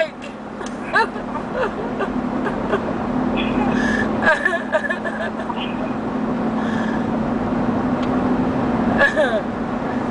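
Steady road and engine drone inside a moving SUV's cabin on the highway, a low even hum that slowly grows louder. Brief faint voice sounds come in about a second in, around the middle and near the end.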